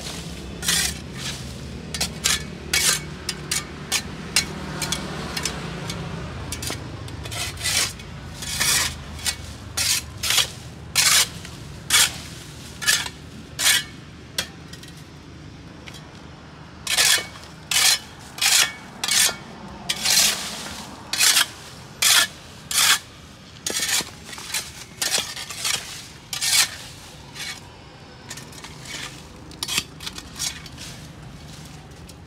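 Small shovel blade scraping rain-matted dead leaves and dirt off stone paving, in quick repeated strokes about one to two a second, with a short pause about halfway through.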